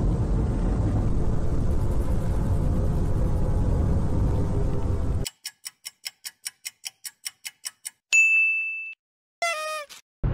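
A low, noisy rumble for about five seconds that cuts off suddenly, followed by a quiz countdown timer ticking about four times a second, a single bell ding, and a short wavering celebratory jingle near the end.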